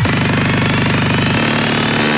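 Hardcore dance track build-up: a kick-drum roll so fast that it runs together into a steady buzzing tone, shifting in pitch partway through, just before the drop.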